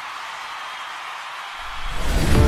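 A soft, even hiss-like noise forms a transition between the narration and the recap music. Low music begins to swell in about one and a half seconds in.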